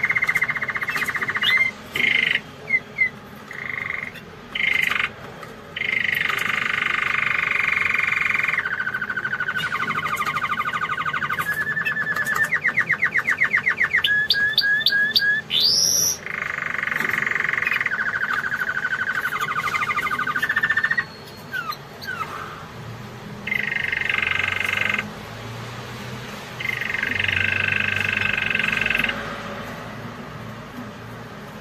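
Domestic canary singing: long rolling trills in phrases of a few seconds with short pauses between them. About halfway through comes a fast run of repeated notes and a brief rising whistle.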